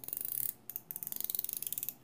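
Baitcasting reel's magnetic brake dial being turned on the side plate: a rapid run of ratchet clicks, about a dozen a second, in two runs with a short break about half a second in.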